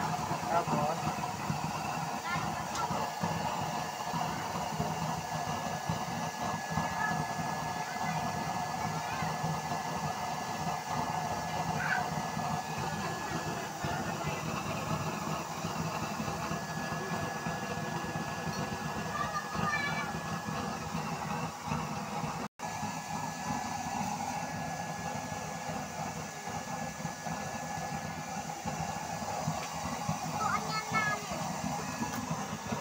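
Homemade used-oil burner stove with its blower fan running, a steady rushing hum of forced air and flame with a faint steady whine. The sound drops out for an instant about two-thirds of the way through.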